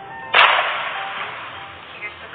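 Edited-in sound effect: a sharp crack about half a second in, then a loud hissing rush that fades away over a second or so.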